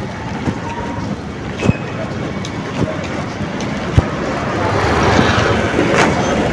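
Street traffic noise with a motor scooter close by, growing louder over the last couple of seconds, broken by a few sharp clicks.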